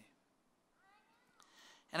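A faint, brief high-pitched cry with a gliding pitch, about a second in, during a pause between spoken sentences.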